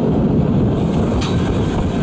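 Narrow-gauge passenger carriages rolling along the track, heard from on board: a steady low rumble with one sharp click a little past halfway.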